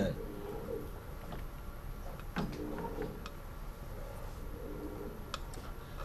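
Quiet workshop room tone with a steady low hum and a few faint clicks as the tachometer box and lathe are handled.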